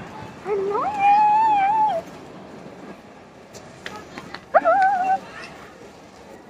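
A high-pitched voice makes two drawn-out, wordless calls. The first lasts about a second and a half near the start; the second, shorter one comes a little past the middle. A few light clicks fall between them.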